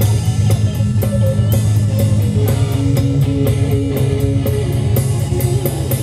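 Live rock band playing: electric guitar over a drum kit keeping a steady beat with cymbal hits, and a heavy low end.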